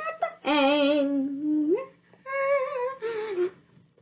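A boy's voice holding wordless, hummed notes in a few long phrases with short breaks between them. The pitch wavers a little, and one note slides upward just before the middle.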